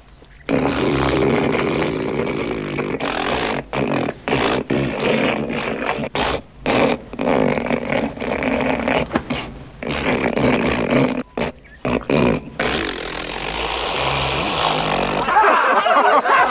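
A man hawking up phlegm from deep in his throat and nose: a long, drawn-out rasping snort in broken bouts with short pauses, steadier for the last few seconds before he spits.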